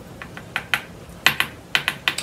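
A run of about a dozen short, irregular clicks and taps, like small hard objects being handled, with the sharpest pair just after the midpoint.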